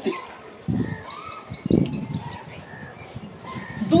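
A small bird chirping a quick run of about ten high, repeated notes, about five a second. Under it is the scratch of chalk being written on a blackboard.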